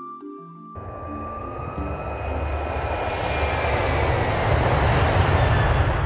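Background music with a soft mallet melody, joined just under a second in by an airplane flyover sound effect: a rushing engine noise that swells steadily louder.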